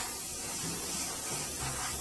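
Airbrush spraying thinned flat black acrylic paint onto a small model base: a steady hiss of air and paint.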